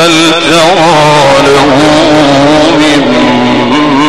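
A male Quran reciter's voice, amplified through microphones, in melodic chanted recitation: long held notes ornamented with quick wavering turns, settling onto a lower held note near the end.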